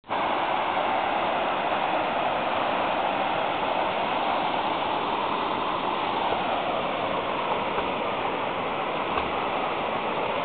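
River water rushing steadily, an even unbroken noise.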